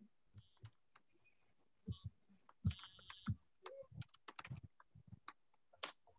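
Computer keyboard typing: a faint, irregular run of key clicks.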